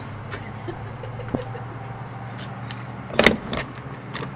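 A steady low hum with a few light clicks, then a short clatter about three seconds in as a gas pump nozzle is handled at a vehicle's fuel filler neck.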